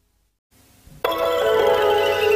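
Near silence, then about a second in a logo jingle starts suddenly: a held chord of bright tones with a higher tone gliding downward.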